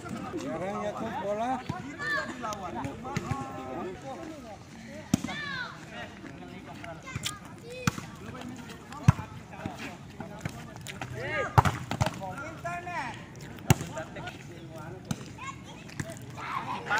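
Players' voices calling and chatting, with several sharp slaps of a volleyball being struck by hands, spaced a second or more apart.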